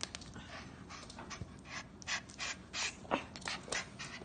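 A dog panting quickly during play, about three short breaths a second.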